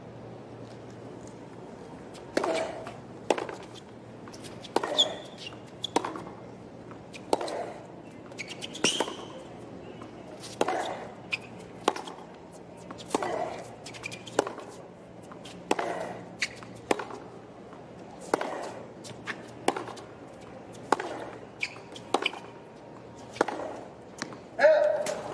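Tennis rally on a hard court: the ball is struck by racquets and bounces off the court, a sharp knock every half second to a second, starting about two seconds in. A low steady crowd hum lies underneath.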